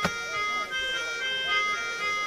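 Theatre accompaniment music: a reedy melody of sustained notes that change pitch about every half second, with one sharp percussive stroke at the very start.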